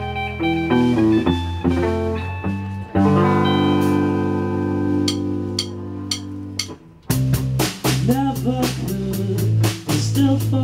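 Rock band playing live, the instrumental opening of a song on guitars and keyboard: a few changing chords, then a long held chord that fades, and about seven seconds in the drums and bass come in with a steady beat.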